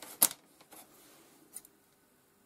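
Scissors handled against an electrical cable: a sharp snip-like click about a quarter second in, then a few fainter clicks and rustles.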